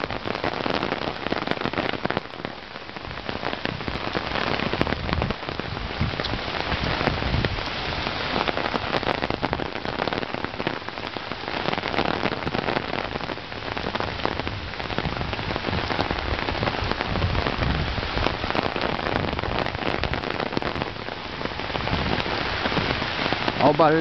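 Heavy rain, a dense and steady noise of drops beating on the umbrella held just over the camera and on the wet street.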